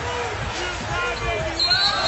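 Basketball arena sound: crowd noise with faint voices, then a referee's whistle starting about a second and a half in, blowing for an offensive foul.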